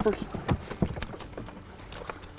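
A few sharp, irregular knocks, about four in two seconds: catfish being handled and sorted by hand in the boat.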